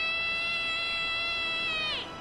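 A cat yowling: one long, steady cry that drops in pitch and cuts off near the end.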